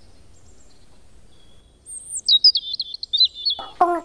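A bird chirping: a quick run of high, thin notes that steps down in pitch, about halfway through, after a quiet start.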